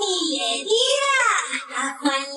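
A child's voice singing unaccompanied, a cappella, in a Spanish children's song, with a long sung note that swoops up and back down in pitch around the middle.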